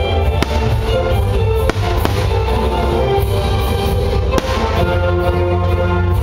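Fireworks going off, about four sharp bangs spread over the few seconds, over loud music that plays throughout.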